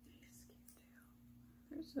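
Quiet room tone with a faint steady hum and a few soft breathy sounds, then a woman begins speaking near the end.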